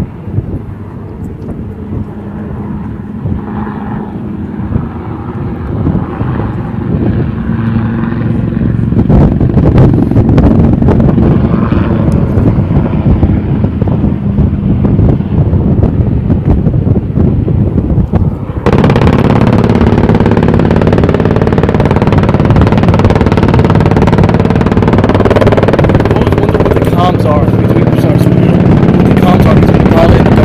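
UH-1Y Venom helicopter in flight: the rotor and its twin GE T700 turboshaft engines grow louder as it approaches. A little past halfway the sound jumps suddenly louder and fuller, and holds there.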